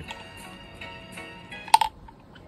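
Soft background music with held tones. Near the end comes one sharp clink, the loudest sound, from a ceramic drinking mug being handled.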